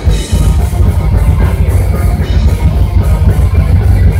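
Live heavy metal band playing loud: distorted electric guitars and bass guitar over a drum kit, the mix thick and heavy in the low end.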